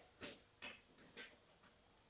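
Near silence, with three faint soft ticks about half a second apart.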